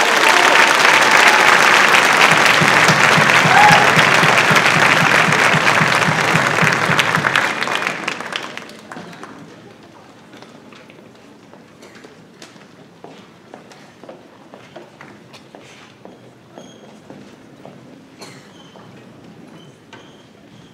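Audience applause filling a school auditorium as a choir piece ends, loud for about eight seconds and then dying away. After it, a low murmur of room noise with scattered small knocks and shuffles.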